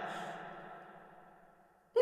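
The echoing tail of a woman's cackling horror laugh dies away slowly to near silence. Just before the end a sudden breathy vocal sound starts.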